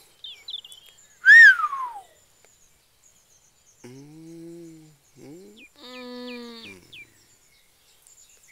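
Outdoor birdsong: a few small chirps, then one loud whistled call falling steeply in pitch about a second and a half in. Later come two separate short, low hums.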